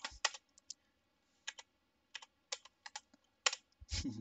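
Typing on a computer keyboard: a scatter of separate key clicks, with a short pause about a second in.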